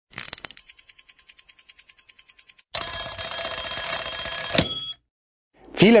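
Sound-effect clock: a few quick clicks, then fast ticking, about seven ticks a second and fading. This is followed by a loud mechanical alarm bell ringing for about two seconds, which stops abruptly about two-thirds of the way through.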